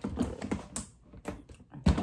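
Light plastic clicks and taps as hands handle a clear plastic storage drawer unit, with one louder knock near the end.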